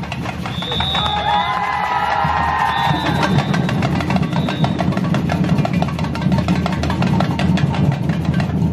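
Street percussion band playing: bass drums under tambourines and metal shakers in a dense, fast, even rhythm.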